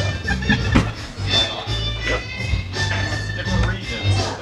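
Background music with guitar plays throughout. A pool cue strikes the cue ball with a sharp click about three quarters of a second in, followed by fainter clicks of the balls.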